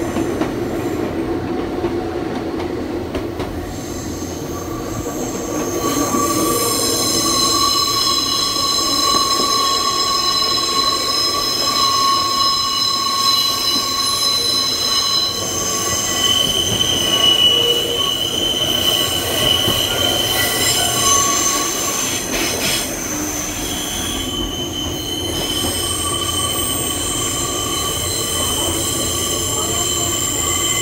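Nankai Tenkū sightseeing train running, heard from its open-air observation deck, with the rumble of the running gear and wheels squealing. The squeal comes in about six seconds in as several steady high tones and comes and goes through the rest.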